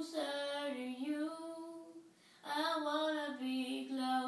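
Children singing a slow gospel song in long, held phrases, with a short breath pause about two seconds in.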